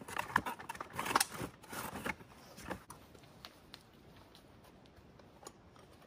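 Short metallic clicks and clinks of a pump-action shotgun being handled at a table, clustered in the first three seconds with the loudest near one second in, then only a low, quiet background.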